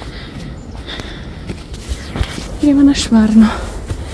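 Footsteps rustling through dry fallen leaves on a forest trail, with a knock or two underfoot. A woman starts speaking about two and a half seconds in.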